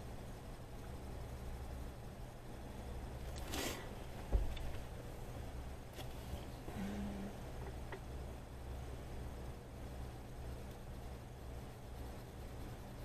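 Faint scratching of a colored pencil shading on coloring-book paper over a steady low hum. About three and a half seconds in there is a brief rustle, then a single dull thump.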